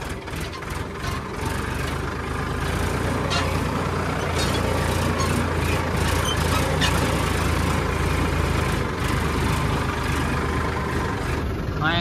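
A farm tractor's diesel engine running steadily as the tractor drives along a rough, overgrown track, getting a little louder about a second and a half in. Scattered sharp clicks and rattles sound over the engine hum.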